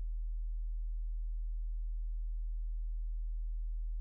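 A steady low hum: one unchanging deep tone with nothing else over it.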